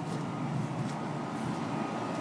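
Steady mechanical hum of outdoor air-conditioning condenser units running, with no distinct knocks or changes.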